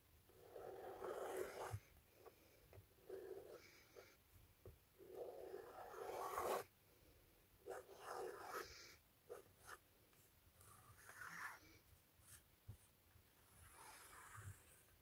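Black marker drawing on tracing paper, faint scratchy strokes coming and going, each lasting up to about a second and a half with short pauses between them.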